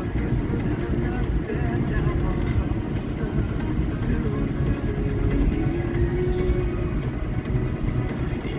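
Steady low rumble of road and running noise inside a moving car's cabin, with faint voices and music underneath.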